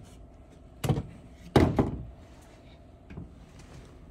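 Dull handling knocks against wooden storage shelving and stored car parts: one about a second in, a louder double knock about a second and a half in, and a faint tap a little after three seconds.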